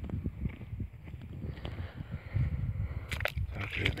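Wind rumbling on the phone microphone with footsteps and handling noise on dry ground, and a few sharp clicks about three seconds in.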